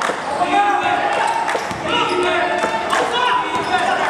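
A basketball bouncing on an indoor court during live play, with players' and spectators' voices.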